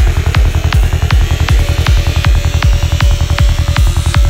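Dark psytrance track: a fast, steady kick drum and rolling bassline, with sharp percussion ticks above.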